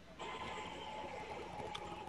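Faint steady hiss with a thin steady tone, switching on suddenly just after the start and stopping shortly before speech: the background noise of an open remote audio line.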